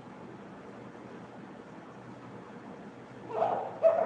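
A whiteboard marker writing on a whiteboard, with a brief louder squeak and a sharp tap near the end, over a faint steady hiss.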